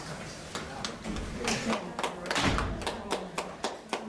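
Scattered hand claps, starting about a second and a half in and quickening to several a second near the end, over a murmur of voices in a hall.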